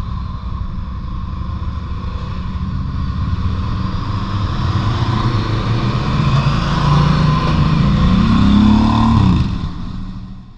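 Adventure motorcycle engines running along a town street, getting louder toward the end. About eight seconds in a pitch rises and falls as a bike revs or passes, and then the sound fades out.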